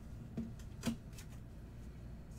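Two short, sharp clicks about half a second apart, the second louder, followed by a fainter tick, as a pen and a trading card in a clear plastic holder are handled on a table.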